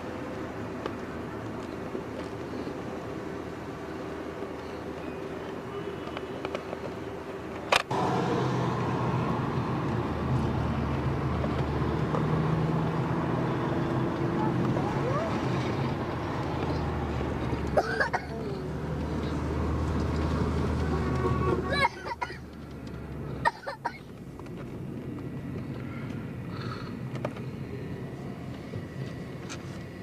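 Car engine and road rumble heard from inside a moving car, with faint voices now and then. A sharp click comes about eight seconds in, after which the rumble is louder.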